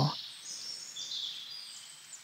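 Faint bird chirps over a soft, quiet hiss of forest ambience, after the last syllable of a voice trails off.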